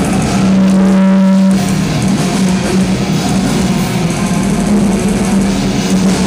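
Heavy metal band playing live through a venue PA, recorded from the crowd. A single electric guitar note is held for about the first second and a half, then the band plays on with dense guitar.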